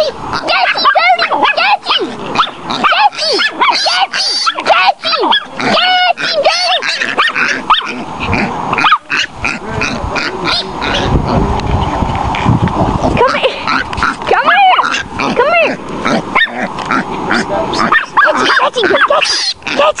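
Chihuahua baying at a piglet: a rapid run of high yaps and bays, several a second, broken in the middle by a few seconds of rushing noise.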